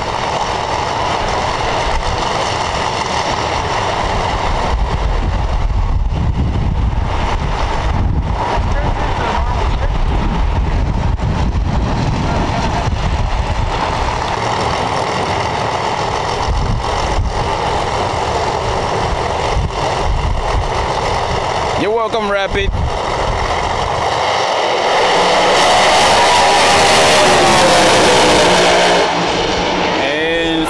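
Drag race car engines running at the starting line, then the two cars launching at full throttle and running down the track. Loudest a few seconds before the end.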